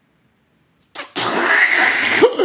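A man making a loud rasping, wavering mouth noise that starts about a second in, imitating a toilet seat sucking down onto a backside in a vacuum.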